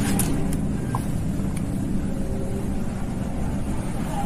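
A steady low rumble, like a running engine, with a few faint clicks as the diode leads are handled.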